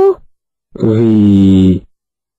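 A voice pronouncing the Arabic letter ghayn with a long vowel, each syllable held for about a second. One syllable fades out just after the start, and a second, steady and slightly falling in pitch, sounds from just under a second in to near the end.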